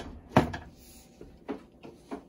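A glass pan lid set down on a stainless skillet with one sharp clack about half a second in, followed by a couple of quieter knocks.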